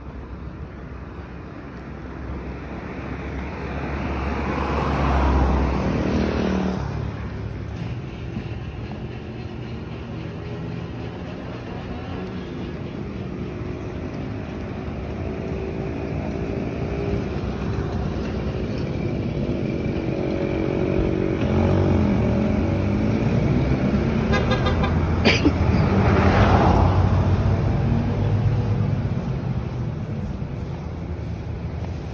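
Street traffic on the road alongside: one vehicle passes about five seconds in, then a motor vehicle's engine hum builds steadily and passes loudest near the end, with a short horn toot just before its peak.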